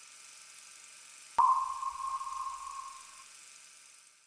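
A single sonar-style ping about a second and a half in: one sharp tone that rings and fades over about two seconds, over a steady faint hiss.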